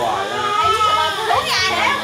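Several voices talking over one another, adults with a young child among them, and a brief high-pitched voice about one and a half seconds in.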